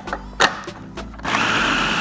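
After a couple of sharp clicks, a food processor switches on about a second in and runs steadily with a whirring whine, blending soaked beans, eggs and seasonings into batter.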